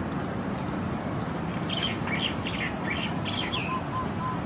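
Small birds chirping: a quick run of about eight short chirps in the middle, over a steady low rush of outdoor background noise.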